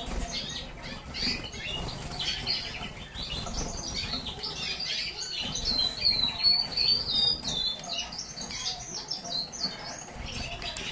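Agate red mosaic canaries singing: a string of short high chirps, with a longer warbling trill in the middle, over low rustling.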